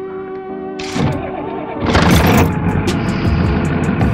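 Diesel truck engine starting about two seconds in, then running at idle, under background music with steady held notes.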